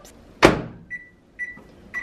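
Microwave oven door shut with one sharp click, then three short high keypad beeps about half a second apart as the oven is set to run again.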